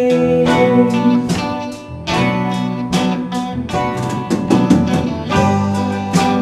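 Live band playing an instrumental break between sung lines: guitars over a steady drum beat, with a brief dip in level about two seconds in.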